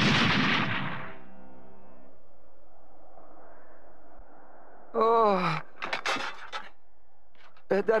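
Explosion of a crashing spacecraft in a cartoon, dying away over the first second. About five seconds in, a man gives a short groan falling in pitch, followed by a few brief grunts.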